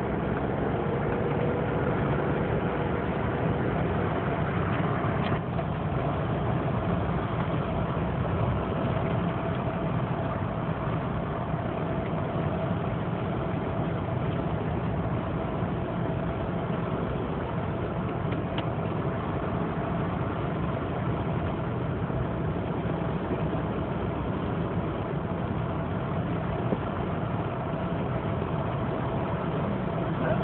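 Steady engine and road noise heard inside a moving vehicle's cabin.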